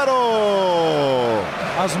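A Portuguese radio football commentator's voice holding one long drawn-out vowel that slides steadily down in pitch for about a second and a half, the stretched end of a goal call. It then breaks back into rapid speech.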